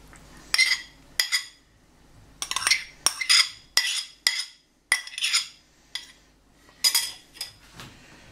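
Metal spoon scraping and clinking against a ceramic bowl as fried onion and carrot are scraped out of it: about a dozen short, irregular scrapes and clinks.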